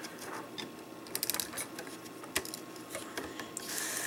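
Small plastic clicks and taps as toy plastic blocks are handled and fitted onto a clear plastic stand, with a short rustle near the end.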